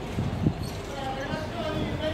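Low thuds of walking footsteps on pavement, the loudest about half a second in, then a person's voice talking from about a second in.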